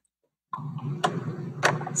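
Dead silence, then from about half a second in the steady hiss and hum of an open microphone, with two sharp clicks about half a second apart.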